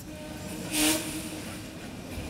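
A large room of seated diners rising to their feet: a general rustle of chairs and bodies moving, with one loud chair scrape on the floor a little under a second in.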